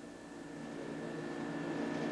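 A steady hum of several held tones over a faint hiss, slowly growing louder.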